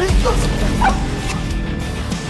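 Background music with two short dog yelps over it.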